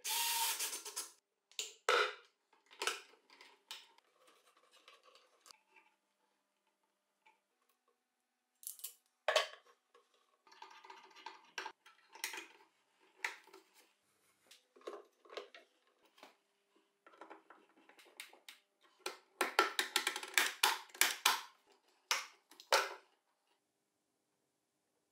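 Scattered small clicks, taps and rustles of hands fitting plastic electrical parts (junction box, outlet, cable clips) onto a plywood bench, with a denser run of quick clicks near the end.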